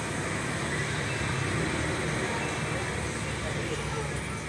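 A voice talking under a steady, dense hiss.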